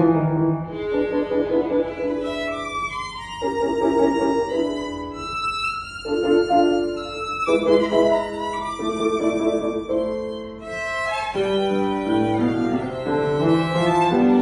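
Solo violin playing a melody of held, bowed notes, accompanied by a grand piano playing chords underneath.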